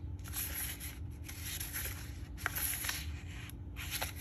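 Cardstock rustling and rubbing under the hands in several bursts as the card is pressed and handled, with a light tap about two and a half seconds in.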